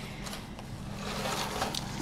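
Faint rustling and scraping as items are handled and moved, over a low steady hum.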